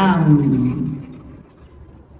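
A voice saying a drawn-out 'ừ' (uh-huh) that falls in pitch and trails off, followed by a quiet pause with only a faint low background rumble.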